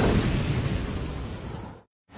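Explosion sound effect: a loud burst at the start that slowly dies away, then cuts to silence just before the end.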